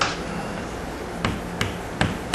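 Chalk tapping and clicking against a blackboard while letters are written: a sharp tap right at the start, then two more close together past the middle, over a low steady hum.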